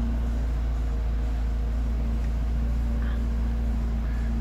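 Steady hum inside a BMW 428i's cabin: the four-cylinder petrol engine idling low under the fan of the seat's warm-air neck vent blowing, with a faint constant tone and no change throughout.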